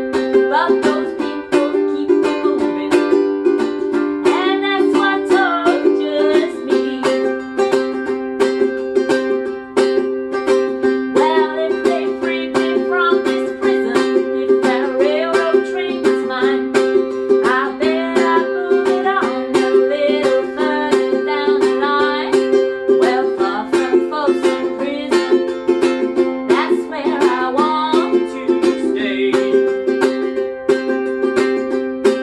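A woman singing while strumming a ukulele in a steady, even rhythm, its chords ringing throughout.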